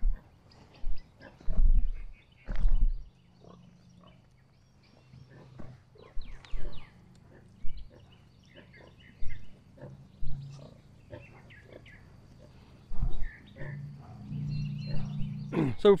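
Pigs at a farrowing site: a sow grunting low while her piglets nurse, with a few louder short grunts in the first three seconds, then a steady low grunting, and faint piglet squeaks scattered through.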